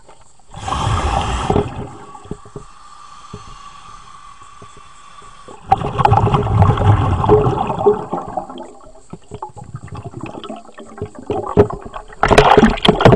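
A diver breathing underwater through a regulator fed by a surface air hose: loud bursts of bubbles about half a second in and again around six seconds in, with a steady hiss between and scattered bubble crackles afterwards.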